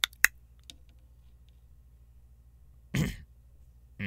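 A man briefly clears his throat with a short cough-like burst about three seconds in. Two sharp clicks come just at the start, over a faint steady low hum.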